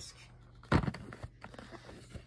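Plastic DVD case being handled: one sharp click about three-quarters of a second in, followed by a few faint ticks.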